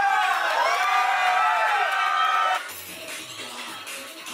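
Several voices cheering and whooping together, with long held and swooping shouts. About two-thirds of the way through it cuts off suddenly to quieter club dance music.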